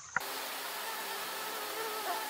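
A flying insect buzzing steadily, heard as several faint held tones over a hiss. A short click about a fifth of a second in.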